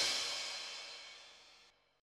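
End of a rock music track: a cymbal crash ringing out and fading to silence within about a second and a half.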